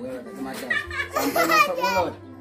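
Children's excited voices and squeals, getting louder from about half a second in, over a steady background music track.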